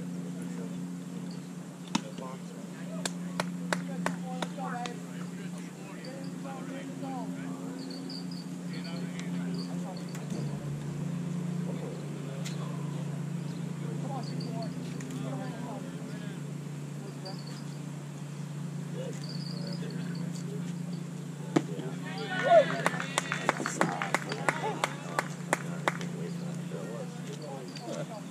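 Outdoor baseball game ambience: faint distant voices of players and spectators over a steady low hum, with faint high chirps. Near the end a single sharp crack is followed by a burst of shouting and a quick run of clicks.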